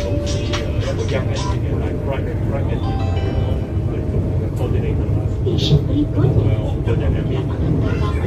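ERL airport train running at speed, heard from inside the carriage as a steady low rumble, with music and indistinct voices over it.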